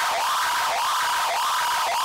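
A stripped-down break in a heavy metal track: a thin, bass-less, siren-like sound sweeping upward in pitch about twice a second.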